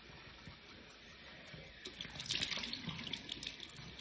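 Cold tap water splashing at a bathroom sink as face wash is rinsed off a face: faint at first, with louder splashes from about two seconds in.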